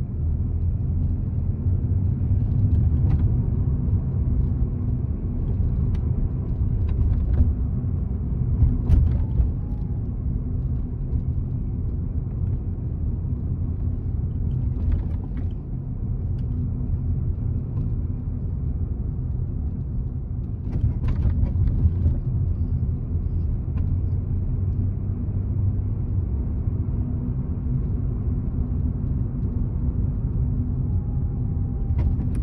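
Steady low rumble of a Ford car's engine and tyres heard from inside the cabin, driving gently at just under 20 mph. A few short clicks break in along the way.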